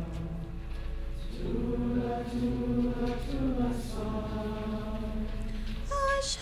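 Unaccompanied singing in slow, sustained notes, chant-like, with no clear words. A steady low electrical hum runs underneath.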